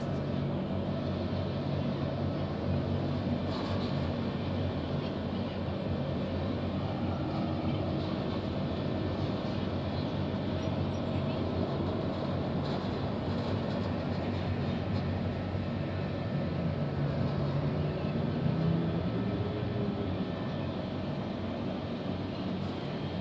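Road traffic crossing a steel truss bridge, heard as a steady low rumble and hum of engines and tyres.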